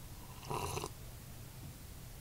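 A short, soft breath through the nose, about half a second in, over a faint steady low hum.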